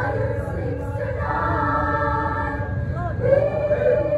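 Mixed choir of women's and men's voices singing held chords, with a sliding vocal swoop about three seconds in that leads into a sustained note.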